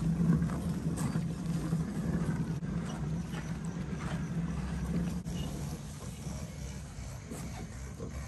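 Loaded wheelbarrow being pushed over grass and a gravel path: a steady low rumble from the rolling wheel, with a few light knocks from the load in the metal tray.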